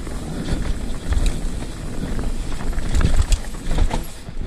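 Hardtail mountain bike ridden fast down a dirt singletrack: wind buffeting the camera microphone with a heavy rumble, tyres running over dirt, and frequent rattling clicks and knocks from the bike over the bumps. The rumble swells about a second in and again near the end.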